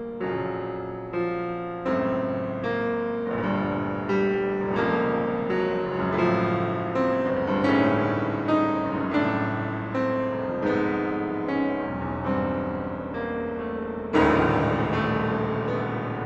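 Violin and grand piano playing a slow elegy: the violin bows a melody over repeated piano chords struck about every three quarters of a second, with a louder chord near the end.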